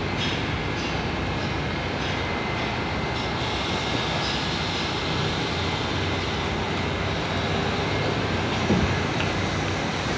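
R68A subway train standing at the platform with its doors closed, giving off a steady rumble and hum.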